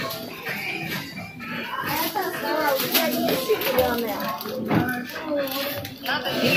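Quieter voices talking, with background music underneath.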